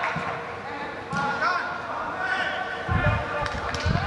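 Players' voices calling out across a large indoor football hall, echoing, with a few dull thuds of the football being kicked and bouncing on the artificial turf in the last second.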